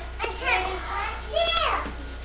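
A young child's high voice calling out twice without clear words, the second call sliding down in pitch, over a steady low hum.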